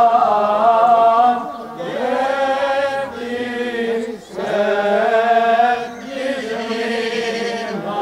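Greek Orthodox Byzantine chant: a sung voice holding long, wavering notes in several phrases with short breaks between them.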